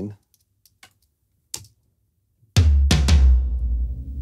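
A recorded tom-tom fill played back: three quick hits about two and a half seconds in, their low boom hanging on for a long time. The long ring comes from the sustain being boosted with a transient shaper. A few faint clicks come first.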